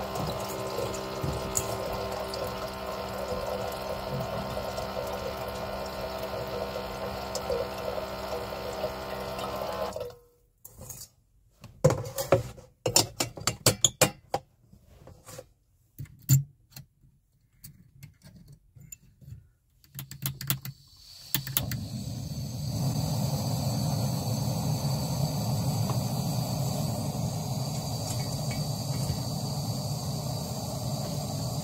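A small electric water-dispenser pump running as it fills a stainless steel kettle with water for about ten seconds, then stopping abruptly. Scattered clicks and knocks follow as the kettle is handled and the small gas camping stove is set going, and about twenty seconds in the stove's burner starts a steady hiss.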